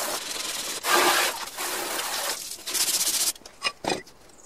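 Water from a hose spraying hard onto the sheet-metal fan housing of a VW Beetle air-cooled engine as it is washed down: a steady hiss that grows louder about a second in and cuts off a little after three seconds, followed by a few short clicks.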